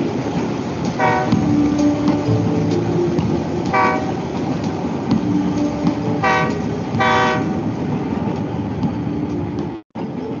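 Cartoon train sound effect from an animation soundtrack: a steady rolling rumble with four short toots of the train's whistle, the last two close together. The sound cuts off abruptly near the end.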